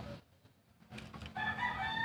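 A rooster crowing: one long, steady, held call that begins a little over a second in.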